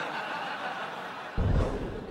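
Studio audience laughing, an even wash of many people, with a brief loud low thump about one and a half seconds in.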